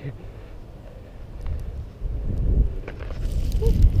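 Wind rumbling on the camera's microphone and mountain-bike tyres rolling on a dirt track. The rumble grows much louder about halfway through as the bike picks up speed, with a few sharp clicks and rattles from the bike.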